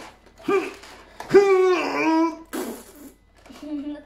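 Non-word vocal sounds from a person: a short voiced sound, then a drawn-out wavering one about a second and a half in, followed by a brief hissy noise.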